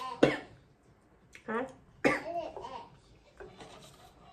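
A woman coughs a quarter of a second in, followed by a few short vocal sounds.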